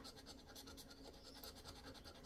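Faint scratching of a scratch-off lottery ticket's coating with a small hand-held scratcher: short, quick, repeated strokes.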